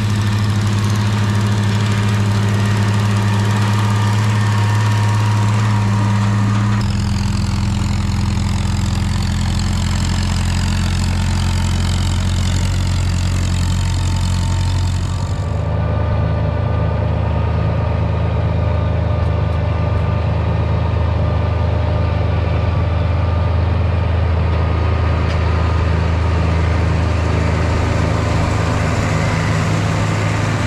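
Farm tractor engines running steadily, in three stretches that change abruptly about seven and fifteen seconds in. In the last half it is a John Deere tractor towing a Gehl forage chopper past at close range.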